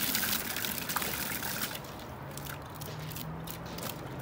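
Water jets of an OASE Quintet fountain falling back and splashing into the water of its basin; about two seconds in the splashing thins out to a light trickle as the jets drop.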